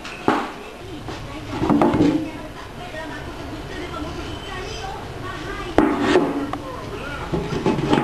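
Handling noise: a sharp knock just after the start and a louder one about six seconds in, with rustling and faint voices between.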